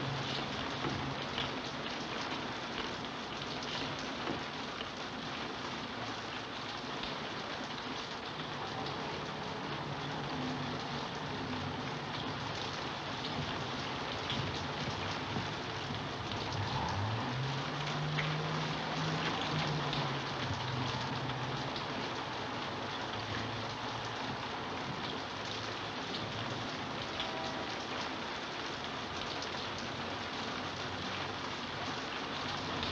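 Steady heavy rain falling and pattering on surfaces, with scattered drip ticks. A faint low drone rises about halfway through and holds for a few seconds under the rain.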